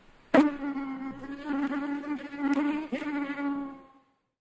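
A flying insect buzzing as a recorded sound effect: a steady droning hum that wavers and swells and fades, opened by a sharp click just after the start and stopping abruptly at the end.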